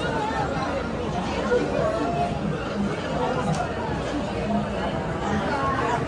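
Background chatter of many visitors in a busy indoor shop: overlapping voices at a steady level, no single voice standing out.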